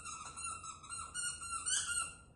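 A squeaky dog toy being squeaked over and over, a high, wavering squeal with hardly a break, loudest near the end.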